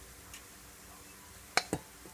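Two quick, sharp clicks about a second and a half in, a plastic serving spoon tapping against dishware while shredded butternut squash is spooned onto a plate, after a fainter click earlier.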